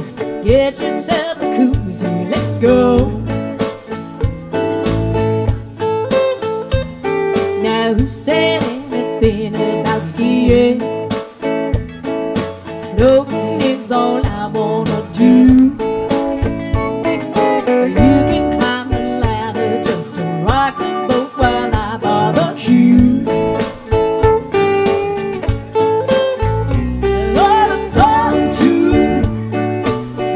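Live trop-rock music played on electric keyboard and guitar.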